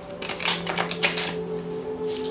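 A tarot deck being riffle-shuffled by hand: a quick run of card flicks starting just after the beginning and stopping a little past one second, over soft background music with held tones.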